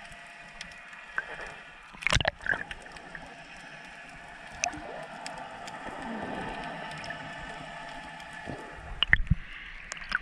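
Sea water heard from just below the surface: a steady hiss with scattered faint clicks. Two loud sloshing splashes come, one about two seconds in and one near the end as the surface is broken.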